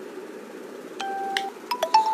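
Two steady electronic beep tones with a few sharp clicks. The first starts about a second in and lasts about half a second. The second, slightly higher, starts near the end.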